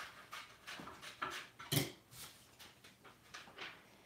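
Soft, rhythmic panting, about two to three breaths a second, with one stronger breath a little before the middle.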